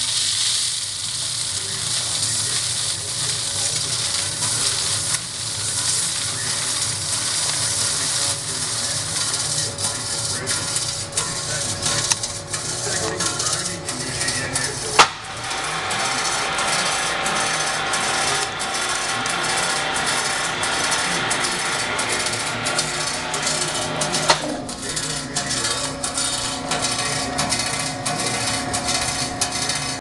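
Magnetic drum separator running with granular material hissing as it pours through, over steady machine noise. There is a sharp click about halfway through and another about two-thirds in, and a steady hum joins after the first click.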